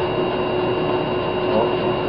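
Steady background hiss with a constant low hum and a faint high whine: the room tone of the recording. No distinct sound stands out.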